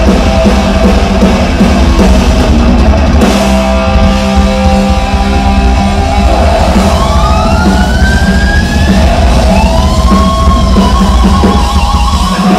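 Thrash metal band playing live and loud: distorted electric guitars, bass and a pounding drum kit, with lead-guitar notes sliding and bending in pitch through the second half.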